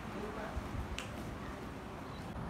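A single short, sharp click about a second in, over low rumbling room and handling noise.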